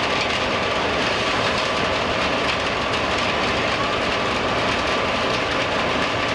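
Steady, unbroken drone of heavy machinery at a running asphalt production plant, with a faint hum in it.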